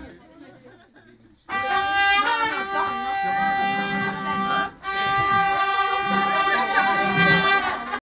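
Organetto (diatonic button accordion) holding steady reedy notes, starting about a second and a half in, with a brief break just before the five-second mark before it carries on.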